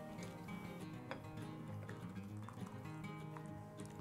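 Quiet background music with sustained notes, and a few faint scraping strokes of a hand grater on a block of smoked white cheddar over a pot.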